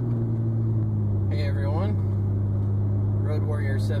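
Steady low drone of a pickup truck's engine and road noise heard from inside the cab while driving.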